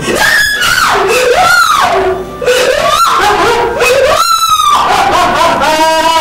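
A woman wailing and screaming in grief, a string of long, loud cries that rise and fall in pitch, one after another with barely a pause.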